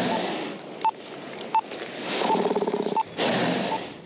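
Sedated polar bear breathing heavily in rasping, snore-like breaths about one a second. A short electronic beep repeats about every 0.7 seconds.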